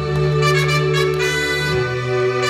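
A live orchestra playing sustained chords over a held bass note, which steps down to a lower note near the end.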